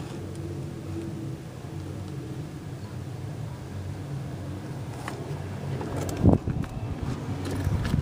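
A car engine running at a steady idle, with a single loud thump about six seconds in.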